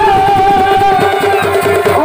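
Purulia Chhau dance accompaniment played through horn loudspeakers: one held, gently wavering melody line over steady drumming.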